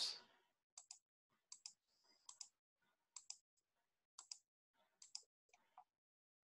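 Near silence broken by faint clicks, mostly in close pairs, about one pair a second.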